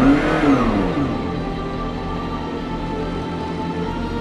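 McLaren P1 GTR's twin-turbo V8 revved once while stationary in neutral, the revs rising and falling back within about a second, with background music running.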